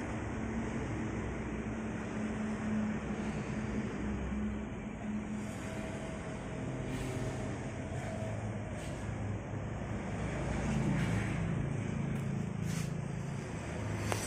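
Steady low rumble of background vehicle noise with a faint engine-like hum, swelling slightly late on.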